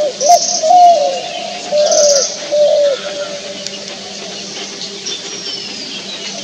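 Spotted dove cooing: a phrase of several soft, low coo notes over about the first three seconds, then it stops. A high, rapid trill sounds twice over the first coos.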